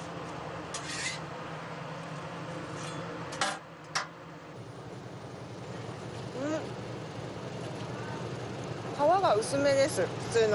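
Steady low hum of a food truck's kitchen and the street, with a few short knocks of a cleaver and utensils on a cutting board in the first four seconds. A voice starts near the end.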